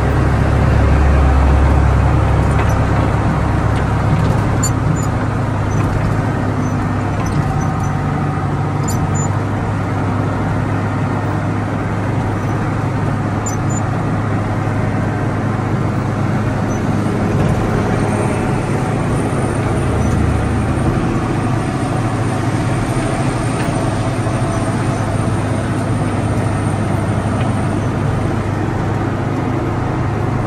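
Caterpillar motor grader's diesel engine running steadily under working load, heard from inside the cab as the machine grades with its blade down. The low rumble is a little louder in the first couple of seconds.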